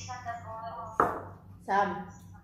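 A small ceramic bowl set down on a table with one sharp clunk about a second in.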